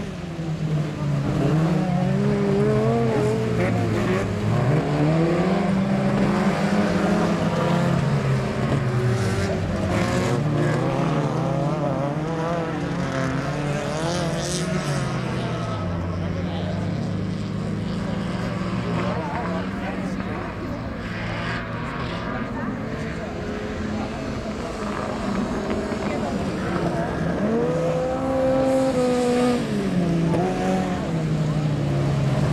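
Autocross race cars running on a dirt track, their engines repeatedly revving up and dropping back as they accelerate and lift off through the course.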